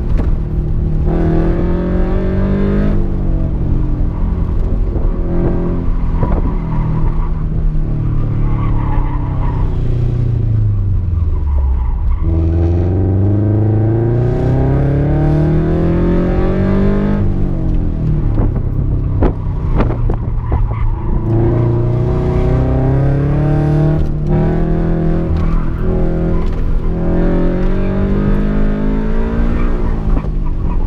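A 2016 Scion FR-S's 2.0-litre flat-four, fitted with Tomei unequal-length headers and a Manzo cat-back exhaust, heard from inside the cabin being driven hard at an autocross. The revs swing up and down repeatedly; a little after ten seconds in they drop deep, then climb steadily for several seconds.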